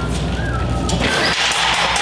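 Manual pallet jack rolling a loaded pallet across a concrete floor, with a short high squeak about half a second in, then a steady rolling noise.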